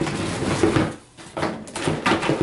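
Hard plastic toy playset parts and packaging handled inside a cardboard box: rustling and knocking, with a short lull about a second in.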